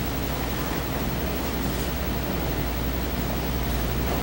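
Steady hiss with a low hum underneath: room tone and amplified background noise, unchanging throughout.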